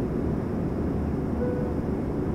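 Steady in-flight cabin noise of an Embraer ERJ-135 at cruise: the even rush of airflow and the hum of its two rear-mounted Rolls-Royce AE3007 turbofans, heavy in the low end. A brief faint tone sounds about one and a half seconds in.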